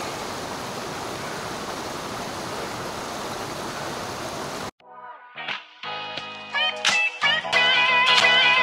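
Steady rush of a mountain stream flowing over rocks, cut off abruptly about four and a half seconds in by guitar music with plucked notes.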